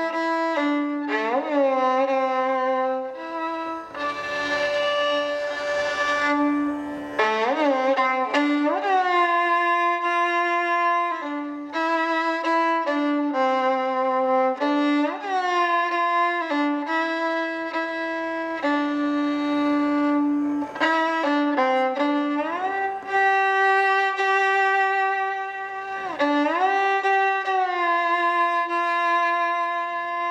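Solo violin playing a slow melody in the Indian classical style, with frequent slides up into held notes.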